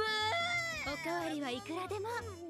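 Subtitled anime dialogue in a high-pitched cartoon voice, one character speaking in lines that rise and fall, over a low steady tone from the soundtrack.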